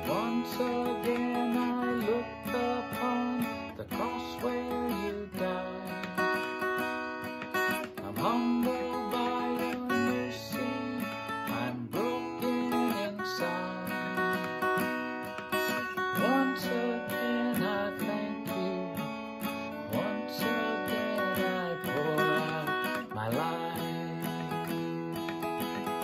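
Steel-string cutaway acoustic guitar being strummed, chords changing about every two seconds.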